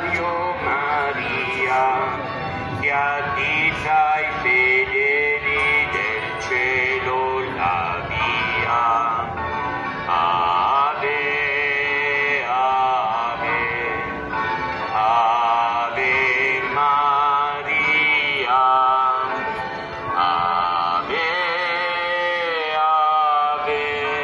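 A religious hymn sung by a male voice over musical accompaniment, with long held notes that waver in pitch, carried over loudspeakers.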